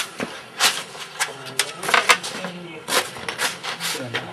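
A run of short, irregular knocks and rustles: handling noise as a person is laid down onto a rope-strung wooden cot.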